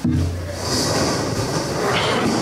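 Metal folding chairs scraping and clattering on the floor as a roomful of people sit down at once. It starts suddenly with a low rumble, then becomes a steady mix of scrapes and rustling.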